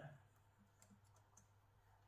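Near silence: room tone with a low steady hum and a few faint clicks from a computer being worked, around the middle.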